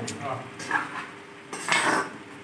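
Dishes and cutlery clinking and scraping as food is handled at a meal, with a louder scraping rattle near the end.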